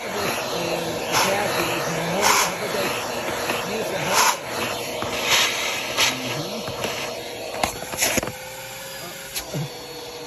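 Upright vacuum cleaner running with a steady whine and rush of suction through its hose and attachment tool, as the nozzle works over a car's plastic centre console. Sharp clacks come every second or so as the tool knocks against the plastic. It gets quieter about eight seconds in.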